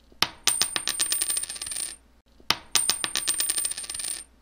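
Slot-machine sound effect: reels spinning with rapid metallic clicking, about ten clicks a second over a high ring. It plays twice, each run lasting about a second and a half with a short gap between.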